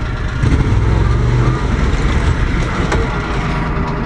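Off-road vehicle's engine running steadily, its low hum briefly louder from about half a second in.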